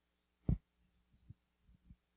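A dull low thump about half a second in, then three fainter soft thumps: handling noise on a handheld microphone.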